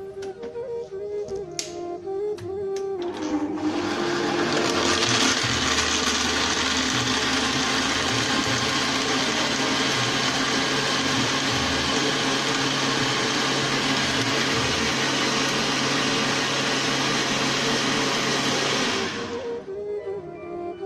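Countertop electric blender puréeing peeled loquats and a peach into a drink. It starts about three seconds in, runs steadily, and cuts off about a second before the end.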